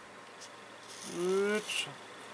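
A man's voice: a short drawn-out sound without clear words, about a second in, over low room noise.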